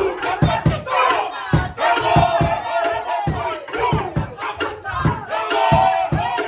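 Māori kapa haka group performing a loud shouted chant in unison, with sharp hits about twice a second from stamping and slapping.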